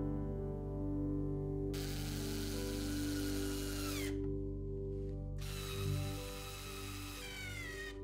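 Small cordless screwdriver driving screws in two runs of about two seconds each, its motor whine dropping in pitch as each run stops, over soft background music.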